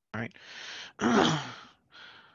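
A lecturer's voice says "right?", draws an audible breath, then lets out a voiced sigh that falls in pitch.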